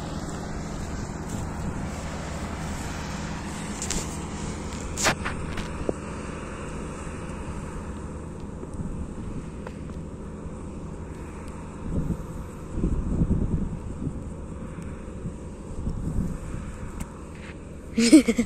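Combine harvester's diesel engine and threshing machinery running steadily while cutting chickpeas, a constant low drone with a steady hum. A sharp click about five seconds in and a few brief low rumbles near the end.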